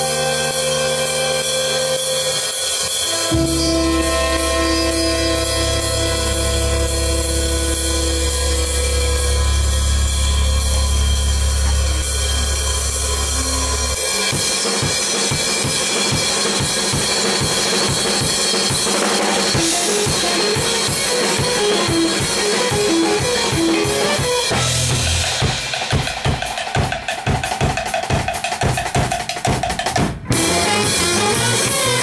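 Jazz-fusion ensemble rehearsing: held chords over a long, sustained low bass note, then about halfway through the drum kit takes over with fast, even strokes. Near the end short, detached pitched notes join the drumming.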